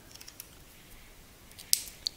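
A few faint ticks, then one sharp click near the end. It comes from hands working the wiring of a breadboard circuit while the AND gate's output is connected to the LED strip.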